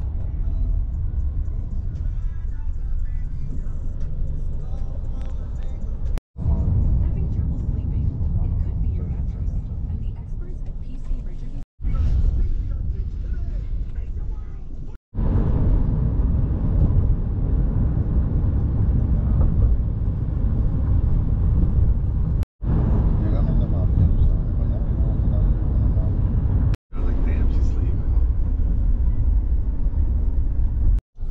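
Road and engine rumble inside a moving Honda sedan's cabin, broken by several abrupt cuts.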